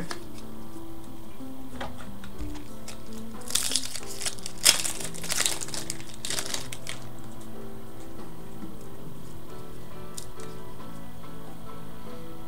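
A trading card pack's wrapper crinkling as it is handled and opened, in a run of about three seconds a few seconds in, over steady background music.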